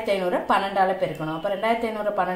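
Speech only: a voice talking steadily through an explanation.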